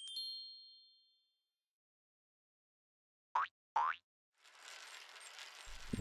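Cartoon sound effects: a short bright ding that rings out briefly, then two quick springy boing-like glides about half a second apart, and a faint hiss building near the end.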